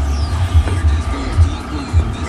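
Music playing from a garage stereo, its bass pulsing about twice a second.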